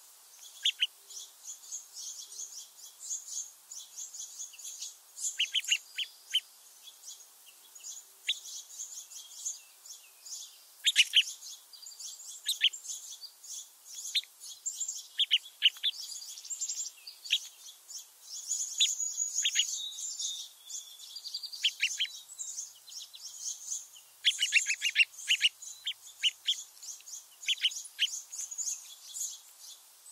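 Many small songbirds chirping and twittering together in a steady high chatter, cut through by frequent sharp, downward-sweeping chirps, with a fast run of them late on.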